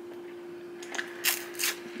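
Quiet chewing of candy: a few short, crackly mouth clicks and smacks in the second half, over a steady low hum.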